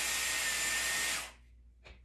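Dyson Airwrap with its curling barrel blowing air: a steady rush of air with a faint high whine from its motor, which stops a little over a second in. A light click follows near the end.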